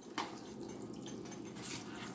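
Metal spoon stirring thick canned pork and beans with sliced hot dogs in a stainless saucepan, the beans just loosened with a little water: faint, steady wet stirring, with a light tap of the spoon against the pan just after the start.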